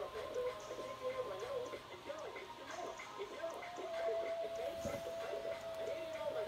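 Played-back song or video soundtrack: music with quick, high voice-like sounds, and a steady held note from about three and a half seconds in.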